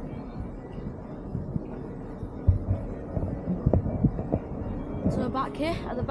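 Wind buffeting the camera's microphone on an open, exposed ship deck: a steady low rumble with a few dull thumps. A high-pitched voice cuts in briefly near the end.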